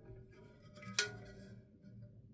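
The aluminium resin vat, fitted with a freshly tensioned PFA film, knocks once sharply about a second in as it is handled and lifted, with a short ringing after it, over a faint low hum.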